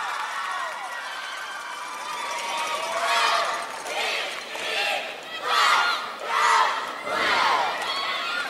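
Arena crowd cheering, then from about three seconds in a cheerleading squad shouting a cheer in unison: loud, rhythmic chanted shouts roughly one a second over the crowd.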